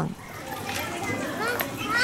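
Background voices of children at play, with short high-pitched calls in the second half.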